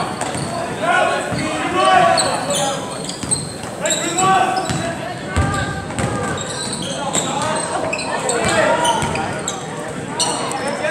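A basketball being dribbled on a hardwood gym floor, short repeated bounces, over the chatter of spectators in a large, echoing gym.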